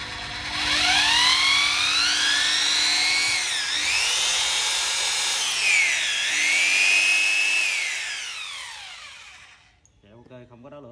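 Bosch rotary hammer drill spinning with no load on its variable-speed trigger. Its motor whine climbs smoothly as it speeds up, dips twice and climbs back, then winds down and fades near the end. The speed control is very smooth.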